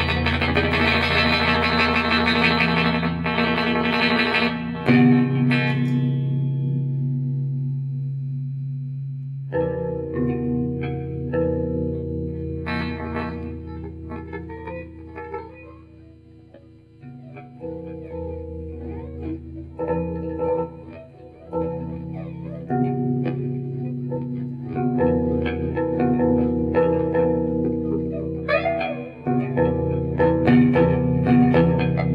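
Electric guitar improvising through effects pedals: a dense wash of sound that thins out and fades over the first several seconds, then from about ten seconds in, picked notes and chords over held low tones, growing louder again near the end.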